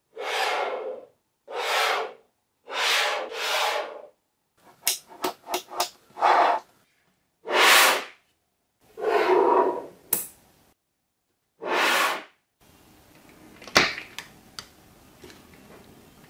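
Small magnetic balls clattering and snapping together as sheets of them are handled and shaped: a run of short rattling bursts, a few quick clicks in between, and fainter clicks near the end.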